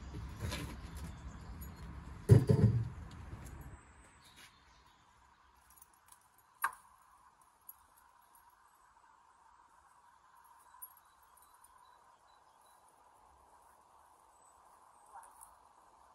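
A wooden stable door is swung open, with a loud thud about two seconds in. Then it is near quiet, with a single sharp metal click as a headcollar is fastened on the pony.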